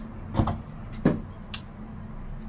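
Two light knocks, about half a second and a second in, as a hot glue gun and small parts are handled on a tabletop, over a steady low hum.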